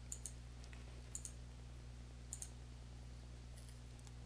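Faint computer mouse clicks, three quick double ticks about a second apart, over a steady low electrical hum.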